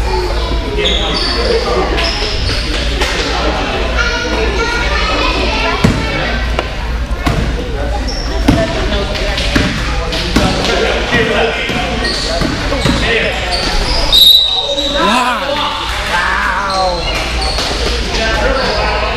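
A basketball bouncing on a gym floor during a youth game, with voices of players and spectators echoing in a large gym. A brief shrill note sounds about fourteen seconds in.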